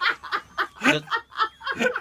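A person laughing in a run of short snickering, chuckling pulses, about four or five a second.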